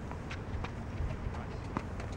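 Footsteps of players moving on an outdoor hard tennis court: a series of light taps and scuffs, several a second, over a low wind rumble on the microphone.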